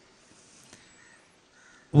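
A pause in a man's talk: faint background sound with a faint, short bird call about three-quarters of the way through, and the man's voice starting again at the very end.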